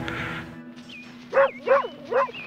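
A dog barks three times in quick succession, about two-thirds of the way in, over a steady low music drone.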